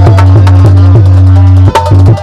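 Loud folk music with drums: an even run of drum strokes, about four a second, over a steady low bass note that breaks off near the end.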